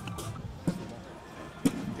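Outdoor background of voices with three short, sharp knocks.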